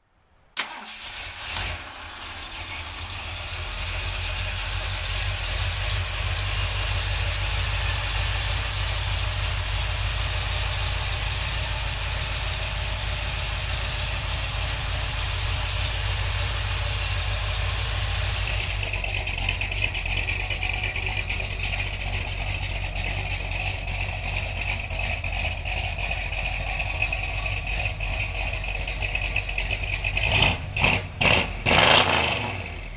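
1977 Ford F-150's 351 V8 with headers starting about half a second in, then settling into a steady idle. Its tone shifts a little over halfway through while it keeps idling.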